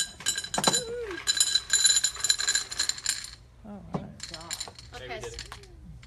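Stones being poured into a glass jar, clinking and clattering against the glass in a rapid run for about the first three seconds, then a few scattered clinks.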